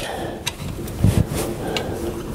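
A few light metallic clicks and scrapes from a screwdriver and spanner working a rocker-arm adjusting screw and lock nut on a Land Rover Series 3 valvetrain, while the valve clearance is set against a feeler gauge.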